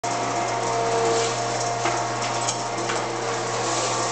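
Table-type dough moulder running with a steady motor hum, with a few light clicks as a piece of dough is fed through its rollers.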